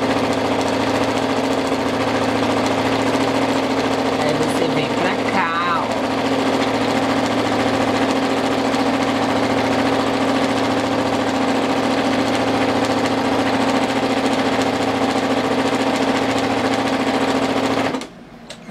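Brother NQ470 domestic sewing machine stitching fast and steadily in free-motion quilting, its motor humming under the rapid needle action of the spring-loaded free-motion foot; it stops abruptly at the very end.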